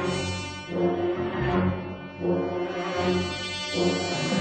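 Orchestral film score: dark, sustained low brass chords that swell and fade about three times.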